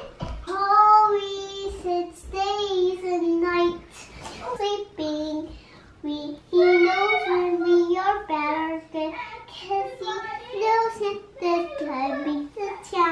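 A young girl singing on her own, unaccompanied, in phrases of drawn-out, wavering notes.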